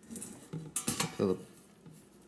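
Light metallic clinks as a steel spring is hooked into a hole in a stainless steel stove body, with a few sharp clicks in the first second.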